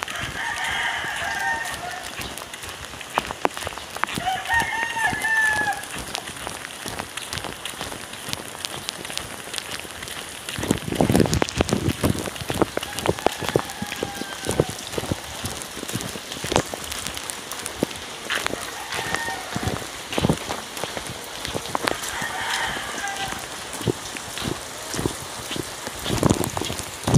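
A rooster crowing several times, with the clearest crows in the first few seconds, over the steady hiss of rain. Scattered knocks and bumps come through as well.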